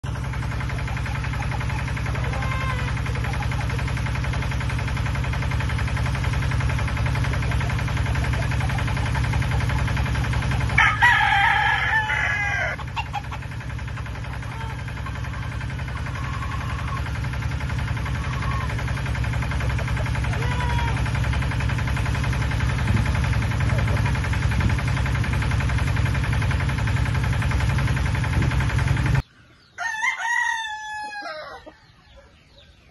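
Gamefowl roosters calling. One rooster crows loudly about eleven seconds in, a single crow of roughly two seconds, and fainter short calls come at other moments. A steady low rumble runs underneath, and the sound cuts off suddenly just before the end.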